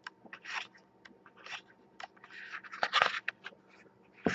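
Glossy photo-book pages being turned by hand: a string of short paper swishes and flicks, the loudest about three seconds in.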